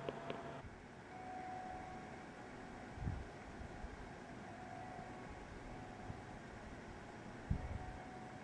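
Quiet room tone: a steady faint hiss, broken by two soft low thumps, one about three seconds in and one near the end.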